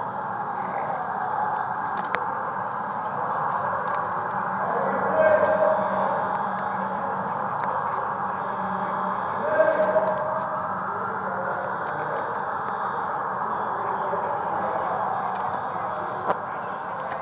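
Sirens wailing, their pitch slowly rising and falling over a steady din, heard through a body-worn camera microphone. Two brief louder tones come about five and ten seconds in.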